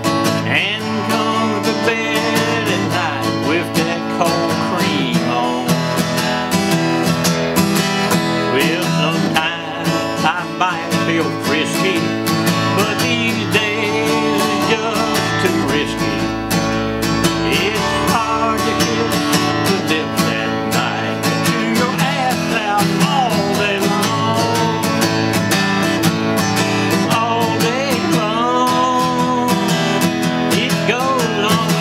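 Steel-string dreadnought acoustic guitar strummed in a country rhythm, playing steadily through an instrumental stretch of the song.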